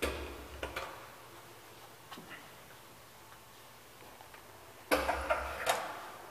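Metallic clunks and rattling in an old KONE traction elevator car with a folding scissor gate: a sharp clunk at the start that fades over about a second, a few faint clicks around two seconds in, then a cluster of loud clanks about five seconds in.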